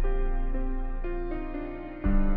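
Slow, gentle piano music. Held low bass and chords sound under single notes that change about every half second, and the sound dies away near the end.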